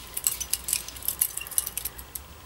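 Butterfly knife (balisong) being flipped through a Helix trick: an irregular run of light metallic clicks and rattles as the handles and blade swing on their pivots and knock together.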